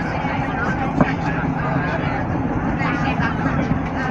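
Steady running noise inside a moving passenger train carriage, with one sharp click about a second in. Faint voices can be heard in the carriage.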